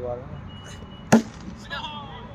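A cricket bat striking the ball once, a single sharp crack about a second in, followed by a brief shout.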